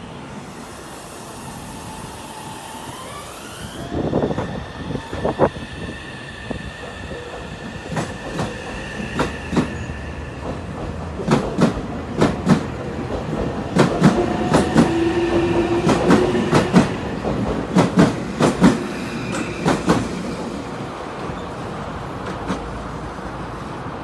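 Meitetsu 2200 series electric train pulling away from a station. Its motor whine rises in pitch over the first few seconds and then holds. The wheels then click over the rail joints in a long run of clacks as the cars pass, thinning out near the end.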